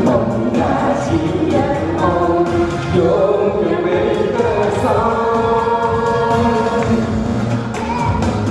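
A woman and a man singing a Chinese duet into handheld microphones over instrumental accompaniment, the phrases drawn out and ending on a long held note shortly before an instrumental passage.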